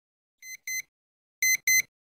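Alarm clock beeping in pairs of short high beeps: a quieter pair, then a louder pair about a second later.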